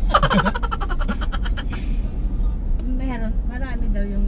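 Steady low rumble of a moving car heard from inside the cabin, with voices over it. A rapid run of sharp, evenly spaced pulses fills the first second and a half, and a high, wavering voice comes about three seconds in.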